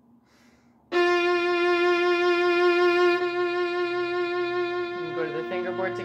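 Solo violin sounding one long bowed note, the overture's opening F, starting about a second in and held steadily for about four seconds. The note eases off slightly near the end as the diminuendo begins.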